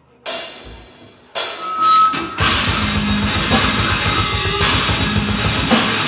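Tech-death metal duo of nine-string electric guitar and drum kit starting a song live: two heavy guitar hits left to ring, the second carrying a high steady note, then about two and a half seconds in the full band comes in with fast, even bass-drum pulses and a crash cymbal about once a second.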